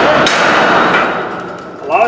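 Flat-head axe striking a Halligan bar set against a deadbolt: one hard metal-on-metal strike just after the start that rings on and fades over about a second. The strikes drive the bar in behind the lock to break off its mounting screws.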